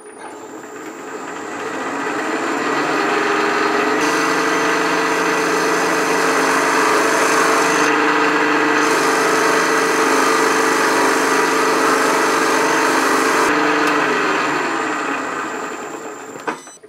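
Milling machine running as a half-inch end mill cuts a counterbore into a metal block. A steady motor hum is joined by a rush of cutting noise and hiss that builds over the first few seconds, holds, and fades near the end as the cut finishes.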